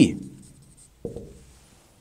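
Marker pen writing on a whiteboard, with the tail of a man's spoken word at the very start and a short faint sound about a second in.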